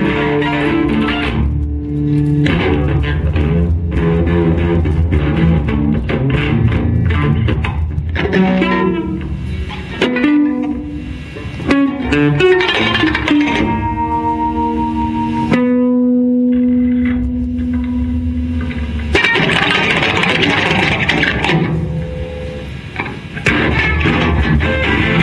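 Two amplified electric guitars played together in dense, choppy chords and scraped strokes. Past the middle the playing thins to a long held note, then loud, noisy strumming resumes.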